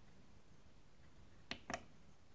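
Near silence with two short clicks a quarter second apart, about three-quarters of the way in: panel buttons under the display of a Yamaha PSR-S670 keyboard being pressed to start playback.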